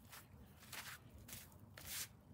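Faint handling and shuffling noises from a person moving right beside the camera: four or five short, soft rustles, a little louder near the end.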